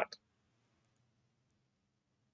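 A single soft computer mouse click just after the start, then only a faint steady low hum of room tone.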